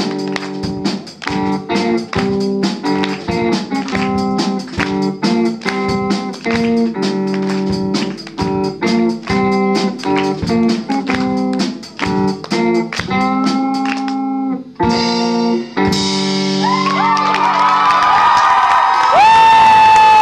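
Live rock band: an electric guitar plays a picked, repeating riff over drums. The song ends a little past halfway through on a last ringing guitar chord, and crowd cheering and applause build up under a held, bending high note.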